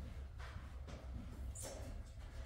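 A pool cue tip being chalked: a few brief, faint scraping squeaks over a low steady hum.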